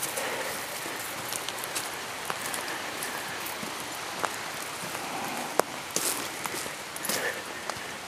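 Steady rushing of creek water with footsteps on a dirt trail, marked by scattered small sharp clicks and crunches.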